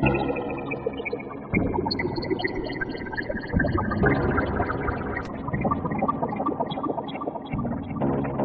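Fragment additive spectral synthesizer playing a sequenced electronic passage. A dense chord of many partials slides slowly down in pitch at first. Fast repeating high notes enter about two seconds in, over a thick low pulsing layer that grows louder partway through.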